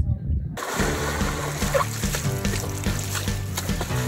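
Background music over water splashing and sloshing in a large tub of muddy water as a man climbs in and thrashes about, starting suddenly about half a second in.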